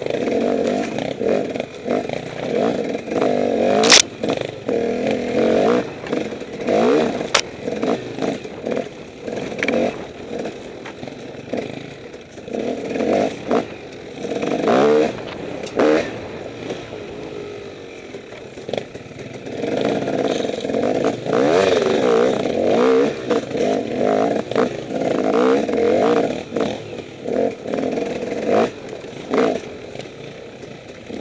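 Enduro dirt bike engine revving up and down, blipped on and off the throttle on a slow, rough singletrack, with a couple of sharp knocks of impacts early on.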